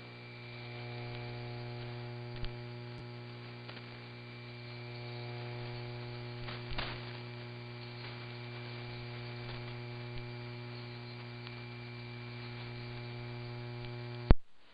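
Shortwave AM broadcast carrier of WWCR on 4840 kHz sending dead air: a steady mains hum with a ladder of overtones and no programme, under a hiss of static with a few faint crackles.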